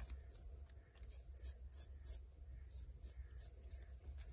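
Straight razor scraping hair off a wet scalp in quick, short strokes, a faint crisp scratch with each stroke, a few strokes a second.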